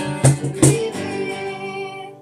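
Acoustic guitar being strummed, with a few sharp percussive hits. It ends on a final chord that rings out and fades over the last second.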